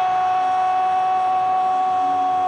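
Brazilian football commentator's drawn-out 'Gooool!' goal call: a man's voice holding one long, steady high note on the vowel.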